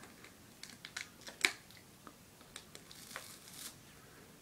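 Faint crinkling and sharp crackles of a foil candy-bar wrapper being handled, the loudest crackle about a second and a half in, then a cluster of crisp crunches near the end as the wafer chocolate bar is bitten.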